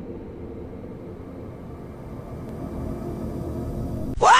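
A steady low rumble with a faint hum, slowly growing louder.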